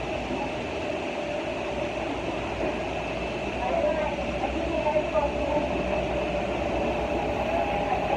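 Steady mechanical drone in an airliner's jet bridge and cabin during boarding, with a faint murmur of passengers' voices.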